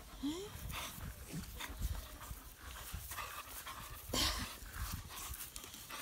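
A dog panting in short, quick breaths while gripping and pulling a rubber tug toy in a game of tug-of-war.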